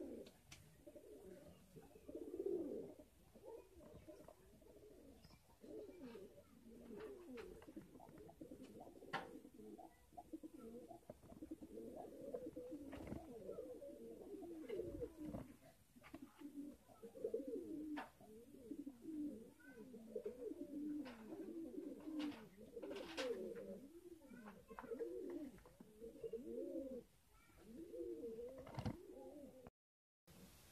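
Several domestic pigeons cooing, their low wavering coos overlapping one another, with occasional light clicks.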